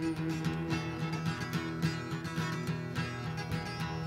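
Acoustic guitar strummed in a steady, even rhythm with no singing: an instrumental bar of a live acoustic folk-blues performance.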